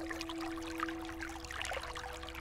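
Steady rain falling, a dense spread of small drop ticks, under a soft sustained musical chord.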